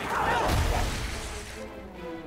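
Animated fight sound effects: a straining voice-like cry over a heavy crash about half a second in. Sustained film-score music comes to the fore in the second half.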